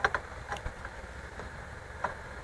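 A few faint metallic clicks and taps from a pellet mill's roll adjusting key and gear being moved by hand, mostly in the first second, over a steady low machinery hum.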